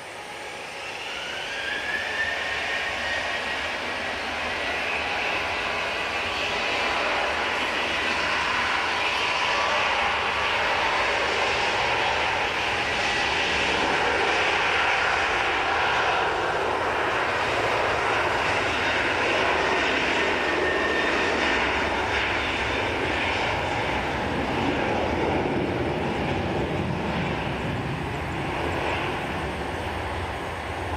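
Boeing 737-900ER's twin CFM56-7B turbofan engines spooling up with a rising whine over the first two seconds, then running loud and steady at takeoff thrust through the takeoff roll.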